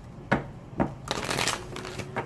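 A deck of tarot cards being shuffled by hand: two sharp card snaps, then about half a second of steady riffling.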